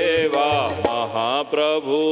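A man singing a Gujarati devotional kirtan in long, held, gliding notes, with tabla strokes in the accompaniment.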